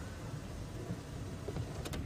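Safari game-drive vehicle's engine running, a steady low rumble, as the vehicle repositions at low speed, with a couple of faint ticks near the end.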